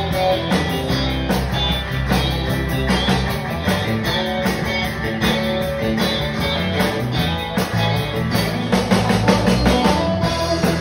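Live country band playing an instrumental passage without vocals: electric and acoustic guitars, electric bass and a drum kit keeping a steady beat.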